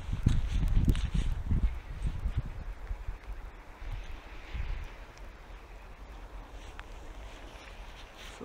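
Wind and handling noise rumbling on a phone microphone, heaviest in the first two seconds, then settling into a quiet, steady outdoor hush.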